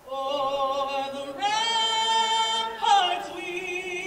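A woman singing solo and unaccompanied, her voice full of vibrato. About halfway through she holds one long high note, then slides down.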